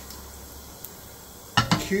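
Cumin seeds frying in hot oil in a metal frying pan as the pan is swirled on a gas hob: a faint, steady sizzle, with one light tick a little under a second in.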